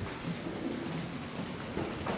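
An audience shuffling and rustling as people get up from their chairs and kneel down together, a steady jumble of clothing and movement noise.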